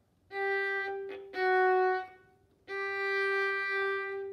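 Violin playing three bowed notes in a third-finger, second-finger, third-finger pattern. The middle note is slightly lower and the last is held longest. The first two notes are played with up bows.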